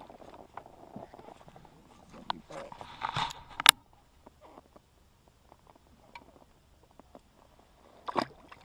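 Small handling noises as an angler unhooks and releases a trout over the side of a small boat: scattered rustles and light clicks, with one sharp click about three and a half seconds in. It is nearly quiet for the second half.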